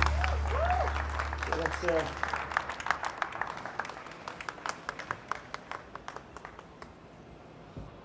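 A crowd clapping sporadically as a new motorcycle is unveiled: separate sharp claps that thin out over the seconds. The low drone of background music fades out during the first few seconds.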